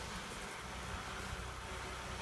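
Steady, even outdoor background noise with a low rumble underneath and no distinct events.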